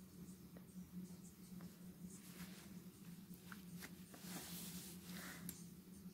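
Near silence: room tone with a steady low hum and a few faint ticks and rustles.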